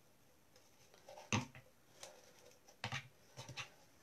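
Quiet handling noises from tying garden twine around a plastic bottle's neck: a few short knocks and rustles, the sharpest about a second in and softer ones near the end.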